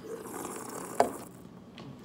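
A person drinking from a can: soft sipping and swallowing noise, then a single sharp click about a second in and a fainter one near the end.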